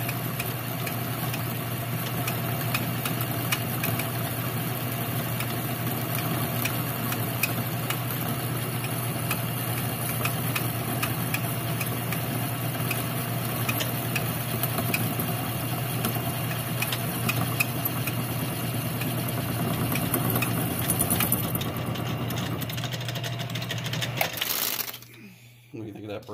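Metal lathe running steadily as the cutting tool takes a turning cut along a steel snowblower shaft, with faint scattered ticks. The lathe is switched off about 24 seconds in and the sound falls away quickly.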